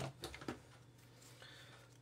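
A few faint clicks from hand tools being handled as pliers are swapped for a wire stripper, then quiet room tone.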